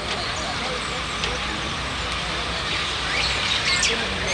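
Steady outdoor background noise: a low rumble under a hiss, with faint voices and a few faint bird chirps.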